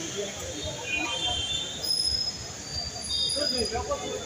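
Busy street ambience of background voices and traffic, with several thin high-pitched tones each held for up to about a second.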